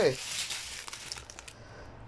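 Small clear plastic bags of diamond-painting drills crinkling as they are handled, with some faint clicks. The rustling dies down after about a second and a half.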